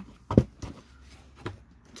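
A cardboard box being handled and set down: one sharp thump about a third of a second in, then a couple of softer knocks.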